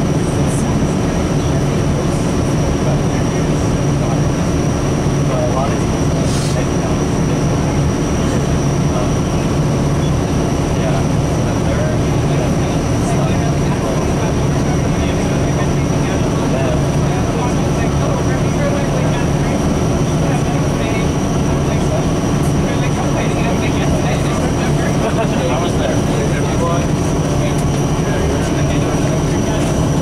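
Steady drone inside the cabin of a 2003 New Flyer DE40LF diesel-electric hybrid bus, its Cummins ISB diesel engine and Allison EP40 hybrid drive running at a constant low pitch with a thin, steady high tone above it.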